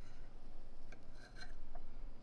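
A fork cutting down through a slice of cheesecake and scraping lightly against the plate, with a few faint clicks near the middle, over a low steady hum.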